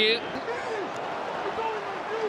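Pitch-side sound of a football match in an empty stadium, with no crowd: a steady hiss with faint distant shouts from players and the thud of the ball being played.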